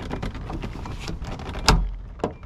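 Plastic body-trim clips being pulled apart by hand, with small clicks and creaks of plastic, then one loud snap near the end as a clip lets go.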